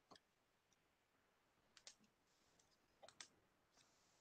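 Near silence broken by a handful of faint, short clicks, a pair close together near the middle and a small cluster about three seconds in.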